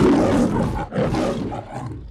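The MGM trademark lion roar: a lion roaring twice in quick succession, with a brief dip between the two roars just under a second in, the second trailing off lower.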